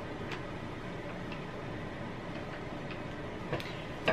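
Quiet room tone: a steady faint hiss with a few faint ticks, about one a second.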